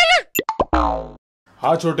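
Comedy sound effects: the end of a wavering high tone, a couple of sharp clicks, then a half-second effect with a sliding pitch. After a short gap a man says "chhote" near the end.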